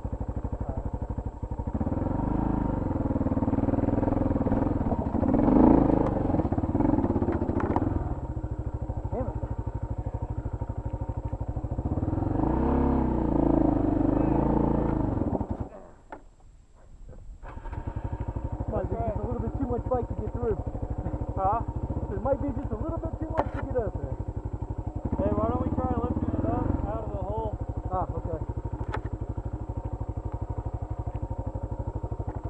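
Adventure motorcycle engine running at low revs on a steep rocky climb, swelling with throttle a couple of times in the first half. About sixteen seconds in the engine sound drops away for a second or two, then it runs again at a steady idle.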